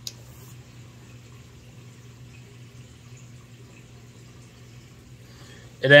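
Quiet room with a steady low hum and faint hiss, and a light click right at the start. A man starts speaking just before the end.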